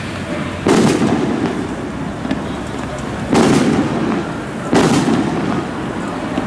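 Firecrackers going off in three loud bangs, about a second, three and a half seconds and five seconds in, each with a short rumbling tail, over steady street noise.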